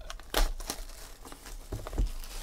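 Plastic wrapper of a sports-card pack being torn open and crinkled by hand: one sharp rip about a third of a second in, then scattered smaller crackles.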